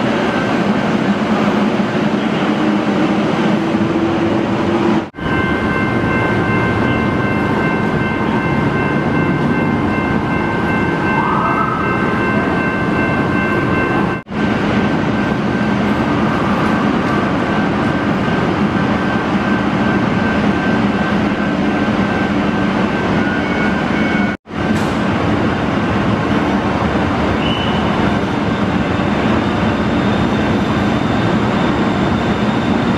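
Steady mechanical drone of idling heavy vehicles and machinery, a low hum with a few faint high whines. It breaks off for a moment three times.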